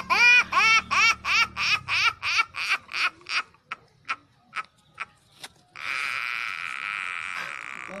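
Loud, high-pitched laughter: a rapid run of 'ha' sounds, about three a second, that trails off over about five seconds. A steady, noisy sound follows for about two seconds near the end.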